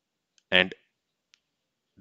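One short spoken syllable about half a second in, then a single faint computer-keyboard keystroke as a semicolon is typed.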